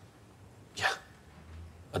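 A quiet pause in a man's speech, broken about a second in by a single short, breathy "yeah".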